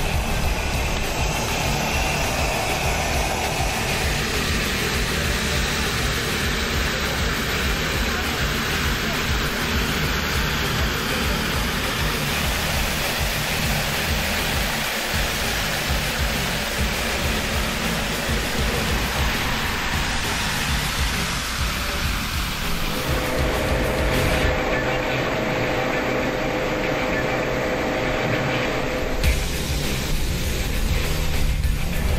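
Background music over a steady rushing noise of water jets spraying from fire hoses and a monitor nozzle, with a fire engine's pump running. The sound changes abruptly about two-thirds of the way through, when a steady mid-pitched hum comes in, and again near the end.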